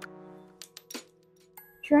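Soft background music fading out, then a few light clicks and a short, high metallic clink while a garment is lifted and handled. A woman's voice starts again near the end.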